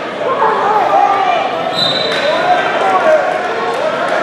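Coaches and spectators shouting over one another during a wrestling bout, with a few dull thuds of the wrestlers on the mat.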